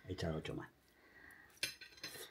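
Fork clinking once against a plate with a short ringing tail, about one and a half seconds in.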